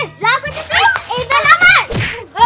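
Children's voices, loud and excited, with music playing quietly underneath.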